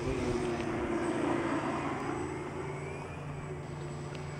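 Electric motor and propeller of the Twin Twirl, a scratch-built foamboard RC gyrocopter-style plane, flying overhead. It is a steady buzzing whine whose pitch wavers slightly, fading gradually.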